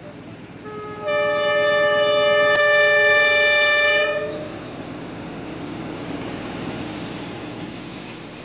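Diesel locomotive sounding its horn, a loud multi-note chord held for about three seconds, then the steady rumble of the train running along the track.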